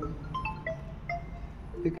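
A wind chime tinkling: a scattered handful of short, clear notes at different pitches, over a steady low hum.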